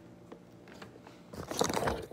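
Phone handling noise: after a second or so of quiet with a few faint clicks, a dense crackling rustle as the phone is picked up and moved against the microphone.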